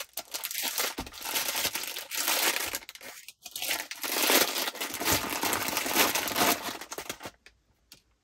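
A clear plastic bag crinkling as it is untied, opened by hand and rummaged to take out a macaron. There is a short pause a little after three seconds, and the rustling stops about a second before the end.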